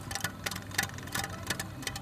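Small electric trolling motor running with a faint low hum, under a stream of irregular clicks and crackles.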